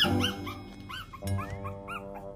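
A newborn Shiba Inu puppy gives a quick run of short, high-pitched squeals, about six a second, through roughly the first second. Under them runs cheerful background music with a bouncing bass beat and held notes.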